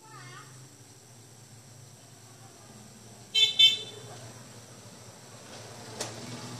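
A vehicle horn honks twice in quick succession, short and loud, about three and a half seconds in, over a faint steady low hum.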